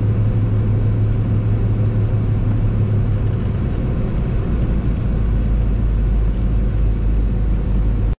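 Steady low drone of a semi truck's engine and tyre noise heard from inside the cab while driving at highway speed; about five seconds in the drone settles to a lower pitch.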